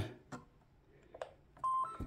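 Yaesu FT-817 transceiver being switched on: a couple of faint button clicks, then a short beep near the end that steps up from one note to a slightly higher one as the radio powers up.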